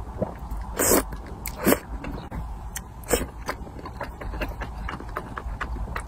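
Close-miked eating sounds: chewing of soft, chewy wide glass noodles in a thick spicy sauce, with many small wet mouth clicks and two louder wet smacks about one and nearly two seconds in.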